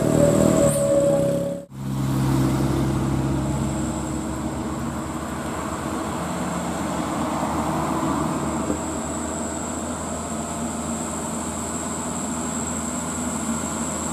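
Diesel engine of a loaded Mitsubishi Fuso Canter dump truck running steadily as the truck approaches, swelling a little about halfway through. Before a sudden cut about a second and a half in, a steady horn-like tone sounds over passing traffic.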